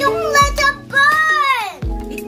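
A young child's voice singing without clear words, ending in one long note that slides down in pitch near the end, over background music with a regular low beat.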